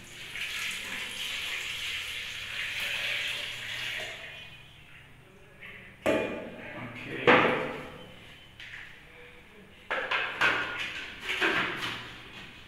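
Milk pouring from a pot into a plastic blender jug, a steady splashing stream over the first few seconds that fades out. Later come several sharp knocks and clatters as the pot is put down and the blender lid is fitted.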